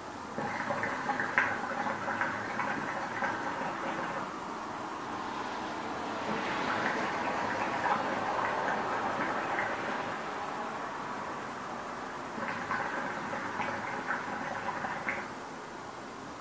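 Hookah water bowl bubbling as smoke is drawn through the hose, a rapid crackling gurgle. It is busiest near the start and again near the end, with a smoother, breathier stretch between.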